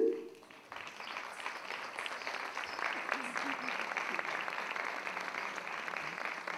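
Audience applause. It starts about a second in and keeps up as a steady clatter of many hands.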